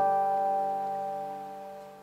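A 1930 National Style 2 tricone resonator guitar's final chord ringing out and fading away, with no new notes plucked.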